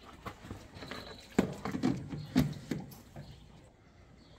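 A few irregular knocks and clunks, the sharpest about a second and a half in and again near two and a half seconds, then quiet near the end.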